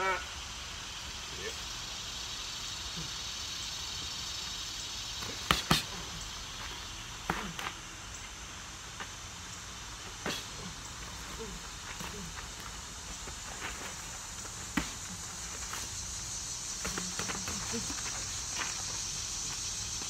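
A few sharp smacks of boxing gloves landing during sparring, two in quick succession about five and a half seconds in and single ones later, over a steady outdoor background hiss.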